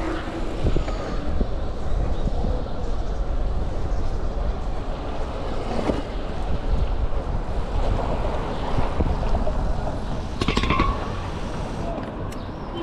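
Wind buffeting the microphone of a camera on a moving road bike, over city street noise. A brief, sharper sound cuts through about ten and a half seconds in, and the wind noise eases a little near the end.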